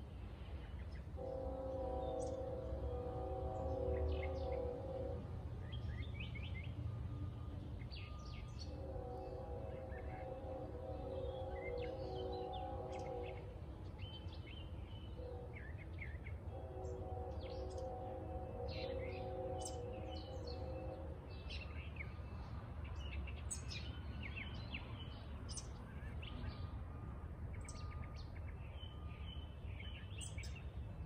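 Several small birds chirping in short, scattered calls over a low steady rumble. A distant horn sounds three long blasts of about four seconds each, a held chord of several steady tones.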